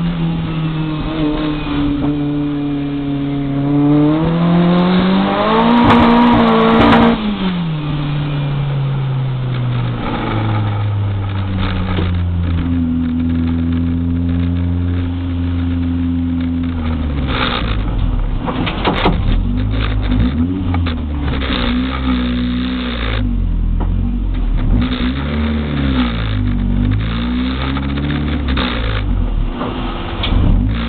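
Turbocharged VW Golf Mk2 engine heard from inside the cabin, revving with its pitch climbing to a peak about seven seconds in, then falling away. It then runs lower and steadier. In the second half its pitch wavers up and down, with knocks and rattles.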